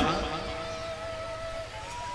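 A pause in a man's spoken talk, leaving faint steady tones over a low hum and light hiss; the tone steps up to a higher pitch near the end.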